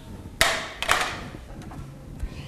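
A few sharp knocks in the first second, each with a short ringing tail.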